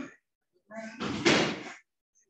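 A short pause, then about a second of unclear vocal sound from a person on a webinar audio line, ending in a loud, harsh noisy burst.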